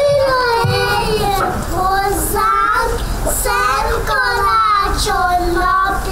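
A young child singing a song solo into a microphone, with held, gliding notes and no break.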